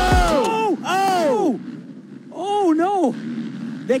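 Commentators' long, drawn-out exclamations of shock ('Oh!', 'Whoa') as a rider crashes, over the end of a hip-hop music bed that cuts out right at the start. There are two bursts of cries, the second a double 'whoa-oh' about halfway through.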